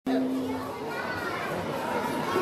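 Several children's voices chattering at once in a large hall, with a low steady hum for the first moment or so.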